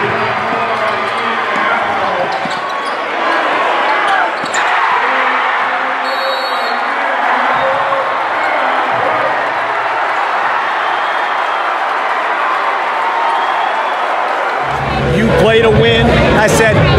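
Gymnasium crowd at a high school basketball game, a steady din of shouting and cheering voices, with a basketball bouncing on the hardwood court and a few sharp knocks.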